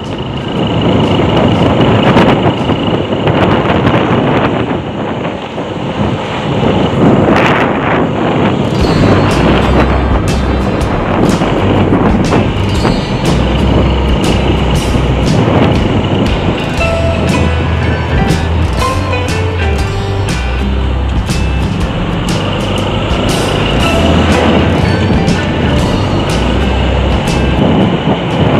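Riding noise from a Honda Supra underbone motorcycle on the move. About nine seconds in, background music with a steady beat and bass comes in over it and carries on.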